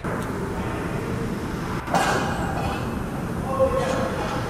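Indoor ice rink ambience during a stoppage in play: a steady low rumble with faint voices, and a short louder sound about two seconds in.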